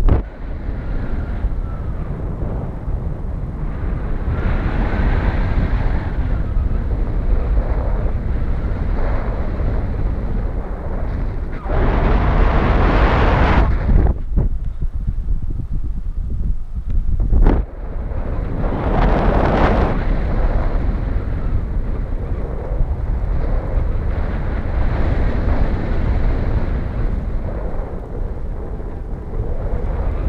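Wind rushing over the microphone of a camera on a paraglider in flight: a loud, steady buffeting rush that swells in two stronger gusts, a little under halfway and about two-thirds of the way through.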